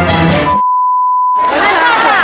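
Stage-show music cuts off abruptly and is replaced by a single steady electronic bleep, one pure tone about a second long, with nothing else audible under it. Crowd noise and voices then come in near the end.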